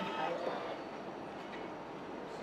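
Automatic one-push lemon sour dispenser pouring a steady stream into a plastic cup.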